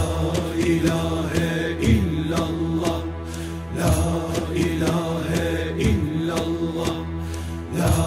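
Turkish Sufi zikir music in makam Uşak: a low, steady chanted drone with a melody over it, pulsing about every two seconds.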